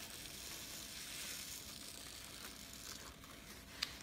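Faint steady hiss of small candy sprinkles trickling out of a paper coffee filter onto parchment paper, with the filter's paper rustling. A single light tick near the end.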